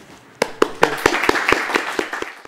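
Audience clapping at the end of a talk, starting about half a second in, with separate claps standing out.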